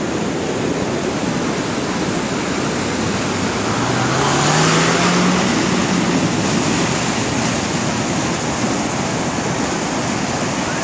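Floodwater rushing steadily over a road. About four seconds in, an SUV's engine revs up, rising in pitch, as it ploughs into the flowing water, and the rush of water grows louder for a couple of seconds.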